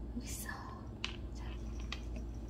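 A person whispering briefly, followed by two faint light clicks about a second apart, over a low steady hum.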